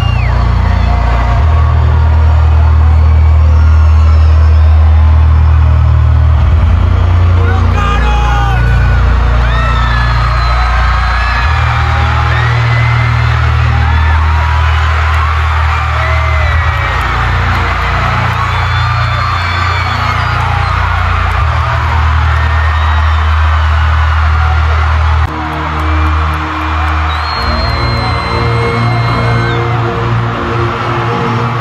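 Loud live concert music with a heavy pulsing bass, and a crowd shouting and whooping over it. The bass pattern changes abruptly about 25 seconds in.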